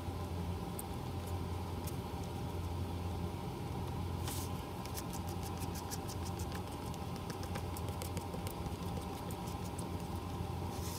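A steady low motor hum, with faint quick ticks through the second half and a brief soft hiss about four seconds in.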